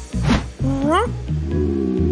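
A meow-like cartoon character call that rises in pitch, over children's background music.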